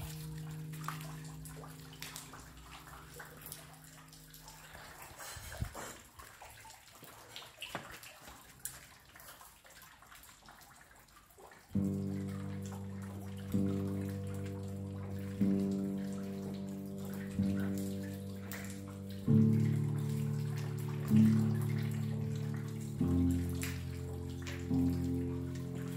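Piano music over a recorded rain sound. A held piano chord dies away in the first few seconds, leaving only the rain and its drips for a while, then the piano comes back near the middle with a new chord struck about every two seconds.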